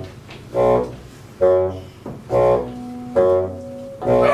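Men's voices chanting a short rhythmic 'uh, uh' at an even beat, about one sound a second, some held a little longer, like a work chant during heavy labour.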